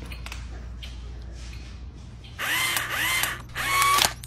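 Small electric motor whirring in two short spurts that rise and fall in pitch past the halfway point, then a steadier whir near the end, over a low steady hum.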